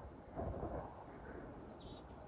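Faint outdoor ambience with a soft rustle about half a second in and a brief high chirp that steps down in pitch near the end.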